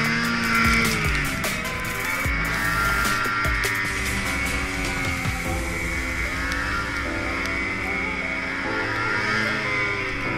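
Ski-Doo Summit X snowmobile's two-stroke engine running under throttle, its pitch rising and falling, with background music over it.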